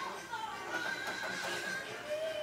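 A high, wavering human voice wailing in grief, holding one long cry in the middle, over music.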